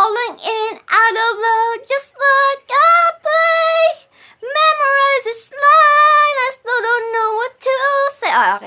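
A solo voice singing a slow love-song melody unaccompanied, in short phrases of held, high notes with brief breaths between them.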